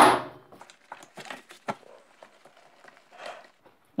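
Faint handling noises: scattered light clicks and rustles as a gloved hand works the spark plug cap on a moped engine's cylinder head.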